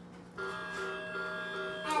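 A battery toy Christmas train set playing its electronic sound effect through its small speaker after its sound button on the remote is pressed: a steady chord of held tones starts about half a second in and lasts about a second and a half.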